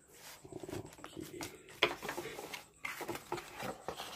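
Cardboard box and packaging handled by hand: scattered rustling, scraping and light knocks as the scale is lifted and tilted in its box, with one sharper knock just before the middle.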